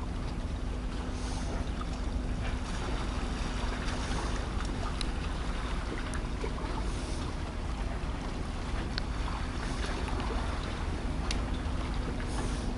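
Wind on the microphone, a steady rumbling hiss, with a steady low hum beneath it and a few faint ticks.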